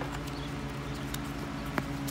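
Stiff printed paper insert being handled and turned over: a few scattered light clicks and crinkles over a steady low background hum.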